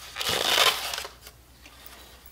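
Styrofoam packing box rubbing and crunching as its lid comes off and a figurine is lifted out: a burst of scraping noise over the first second that then dies away.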